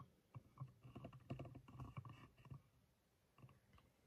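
Faint rustling and small clicks of handling and movement under down blankets, close to the microphone. The clicks come in a cluster for the first two and a half seconds, with one more near the end.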